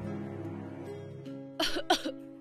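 Soft film background music with held tones, then two short coughs near the end, about a third of a second apart and louder than the music.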